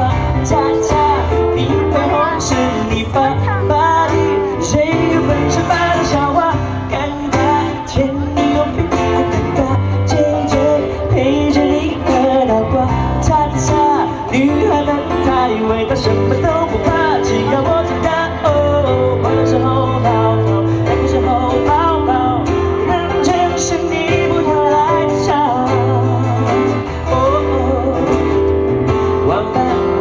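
A male singer singing live, accompanied by acoustic guitar, with sustained low bass notes under the melody.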